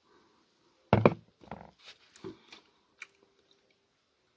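A person sipping beer to taste it: a loud slurp about a second in, then smaller mouth and swallowing sounds, and a sharp click near the end as the glass is set down on the sill.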